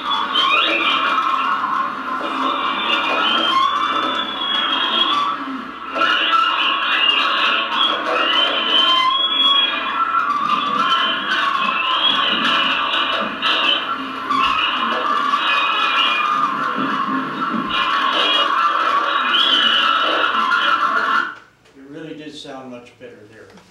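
Playback of a recorded clip through room speakers: dense, music-like sound with high wavering tones, which cuts off suddenly near the end.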